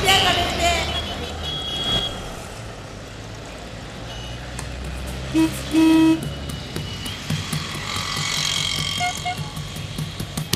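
Busy road traffic with cars and motorbikes running, and a vehicle horn giving a short toot and then a slightly longer one about halfway through.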